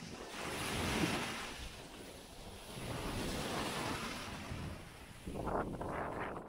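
Small sea waves washing up a beach at the water's edge, surging in and drawing back in slow swells, with a closer wave breaking and foaming near the end.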